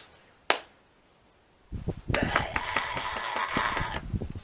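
A man's guttural death metal growl, a harsh vocal made of rapid rough pulses, from a little before the halfway mark to the end. A single sharp click comes about half a second in.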